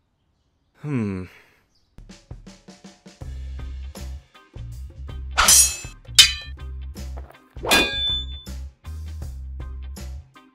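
A short falling groan about a second in, then background music with a steady bass line and light ticking. Over it a pickaxe clangs loudly against rock three times near the middle, each strike ringing briefly.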